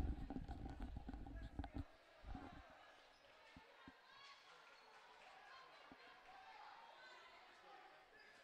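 Basketball dribbling on a hardwood gym floor under faint voices in the gym. There is a quick run of low bounces in the first two seconds, then only a few scattered single bounces.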